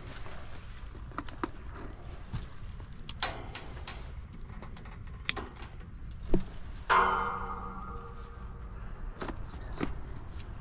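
Hand tools being handled at an air-conditioner condensing unit: scattered light clicks and knocks, with a sharp click a little past halfway. About seven seconds in comes a louder metal clank that rings for about a second.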